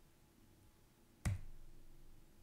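A single sharp click about a second in, trailing off quickly: a computer click advancing a presentation slide.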